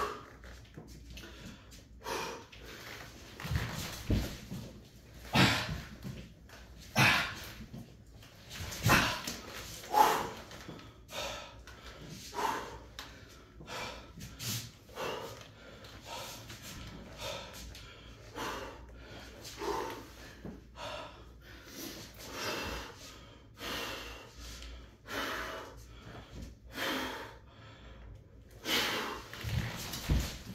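A man breathing hard and heavily, with loud breaths every second or two, winded in the middle of a workout of weighted pull-ups and Navy Seal burpees.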